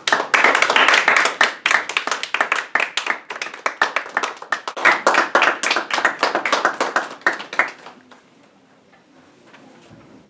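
A small group of people clapping, a steady patter of applause that lasts about eight seconds and then dies away.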